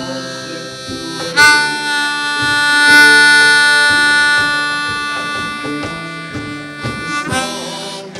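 Harmonica playing a long held note over strummed guitar. The harmonica note comes in about a second and a half in, is held for about six seconds and then drops back, while the strumming keeps an even pulse underneath.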